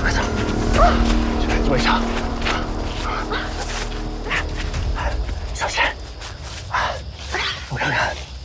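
Dogs barking repeatedly in short, irregular calls over a tense music score.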